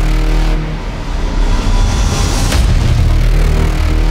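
Logo intro sound effect: a loud, deep bass rumble with a rising whoosh that peaks sharply about two and a half seconds in.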